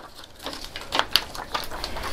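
A sheet of heat-transfer vinyl on its plastic carrier being handled and flexed, giving a scatter of light crackles and clicks.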